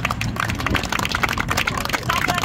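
A small group of people applauding with quick, overlapping handclaps.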